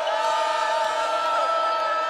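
Basketball arena crowd noise, steady throughout, with several sustained tones held together like a chord.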